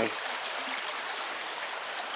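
Shallow creek water running steadily over a gravel riffle, an even rushing hiss.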